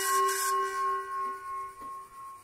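Singing bowl ringing after being struck with a wooden striker: several tones sound together and slowly fade, the upper ones dying out first while the main tone hangs on.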